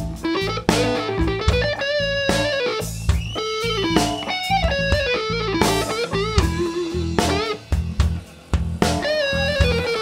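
A live rock band playing a slow blues instrumental passage. An electric guitar plays lead lines with bent and held notes over bass guitar and drums.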